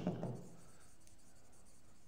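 Faint scratching of a pen writing a word on an interactive whiteboard screen, over quiet room tone.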